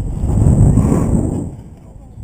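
Wind rushing over a GoPro's microphone as a rope jumper swings through the bottom of the arc on the rope, a low rumble that swells to its loudest about half a second in and then fades.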